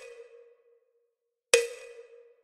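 Metronome clicks with a short woody ring: the fading tail of one click at the start, then a second click about one and a half seconds in that also rings briefly and dies away.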